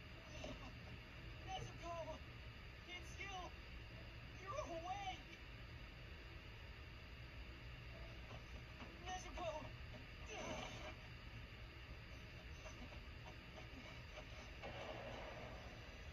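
Faint, quiet voices in short phrases over a steady low hum, as from the anime's soundtrack playing in the background.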